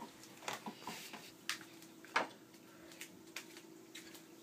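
Faint, scattered light taps and clicks of hard objects being handled, the loudest about two seconds in, over a faint steady hum.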